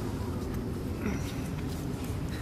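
Steady low outdoor rumble, with wind on the microphone, and only faint scattered sounds above it.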